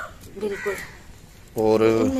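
Brief bird calls about half a second in, then a man's voice holding a low, drawn-out sound near the end.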